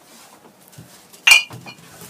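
A single sharp clink, like a hard metal or glass object being struck, with a brief ring about a second in. Faint rustling and handling noise comes before it.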